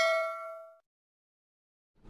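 Bell-like notification ding sound effect ringing out with several clear tones and fading away within the first second, then silence.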